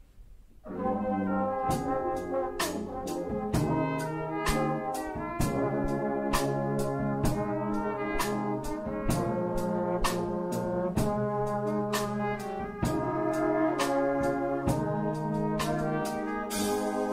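Church worship band starting up about a second in: sustained brassy chords over a steady drum beat with regular cymbal and drum hits, the instrumental introduction to a hymn.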